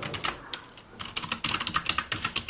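Computer keyboard typing: rapid keystrokes, pausing briefly about half a second in, then resuming.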